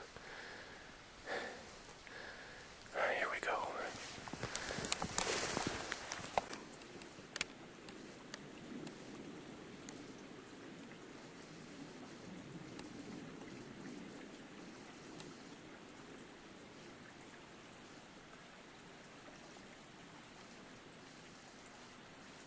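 Irregular splashing, rustling and scuffing as a small stream is crossed on foot, loudest from about three to six seconds in. After that only a faint steady hiss of running water and outdoor background remains.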